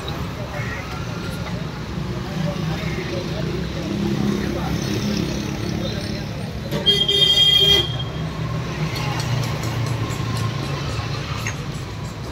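Street sound of people talking over passing traffic, with a vehicle horn sounding once for about a second, about seven seconds in; the horn is the loudest sound.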